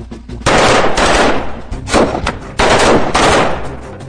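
Automatic gunfire from assault rifles in long rapid bursts, starting about half a second in, with a couple of short breaks between bursts.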